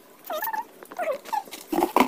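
A few short whining calls that rise and fall in pitch, then a couple of knocks near the end as a cardboard box is moved.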